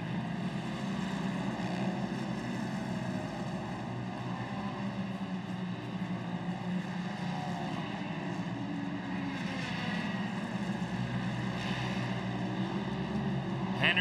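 Engines of Pro Modified side-by-side UTV race cars running hard on a dirt short-course track, a steady drone whose pitch rises and falls a few times as drivers get on and off the throttle through corners.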